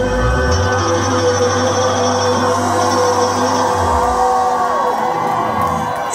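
Live rock band playing a sustained instrumental passage with held chords, heard from within the audience in a concert hall, with the crowd cheering and whooping over it. The deep bass drops out about four seconds in.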